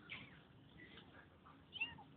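Kittens giving a few faint, high-pitched mews; the loudest is a short mew near the end.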